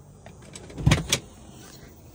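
Two quick sharp knocks about a quarter of a second apart, the first with a low thud: a clunk from the folding rear seat cushion being handled.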